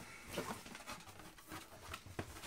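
Faint rustling and scraping of a cardboard Air Jordan 21 shoebox as its lid is lifted open, with a few soft handling sounds.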